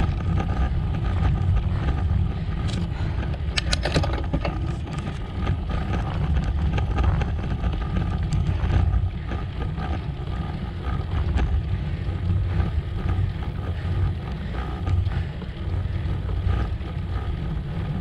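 Wind buffeting the camera microphone on a fast road-bike descent: a steady low rumble, mixed with the tyres running over rough, cracked asphalt. A few short clicks come about three to four seconds in.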